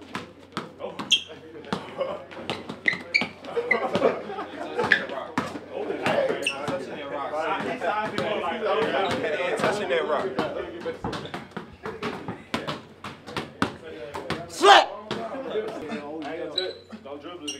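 Basketballs bouncing on the floor as players dribble, a quick irregular run of bounces, under a group of young men talking and calling out over each other. One loud sudden sound comes near the end.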